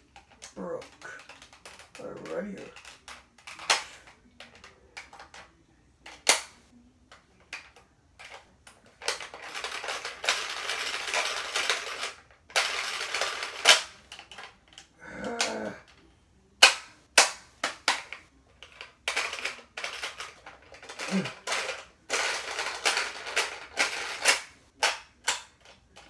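Plastic Bop It Extreme toy being worked by hand: sharp clicks and long stretches of rapid clicking and rattling as its broken spinner is turned, without the toy registering the spin.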